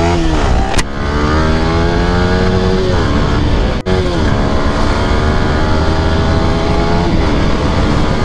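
Yamaha R15's single-cylinder motorcycle engine accelerating under way, its pitch climbing and then dropping back several times.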